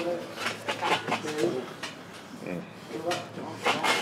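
Indistinct background voices of people talking, quieter than the nearby speech, with no clear words.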